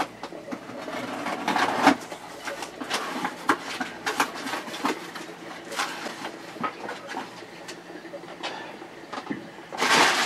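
Rustling and crinkling of packing paper and cardboard as a parcel is unpacked by hand, with irregular small clicks and knocks of items being handled on a wooden workbench.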